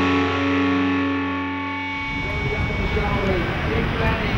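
A distorted electric guitar chord is held and rings out, then cuts off about halfway through. A crowd takes over, with shouting and cheering voices over a steady roar.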